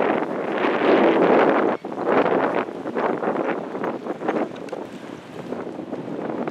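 Wind buffeting the camera microphone: a loud rushing noise that swells and fades in gusts, with a brief drop-out about two seconds in.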